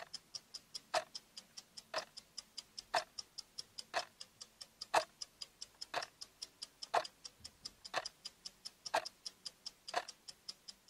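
Clock-ticking sound effect: a steady run of quick light ticks, about five a second, with a stronger tick on every second, like a stopwatch counting.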